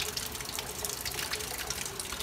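Pond water splashing and dripping as a hand net is swept through it and lifted, a steady patter of small splashes.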